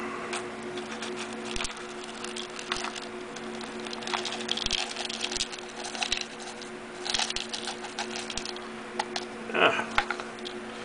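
Small pieces of thin painted aluminum dryer-vent foil clicking and crinkling as they are tipped out of a plastic cup and pushed around by fingertips on a card strip. The sound is a scatter of light irregular clicks with a few rustling flurries, over a steady low hum.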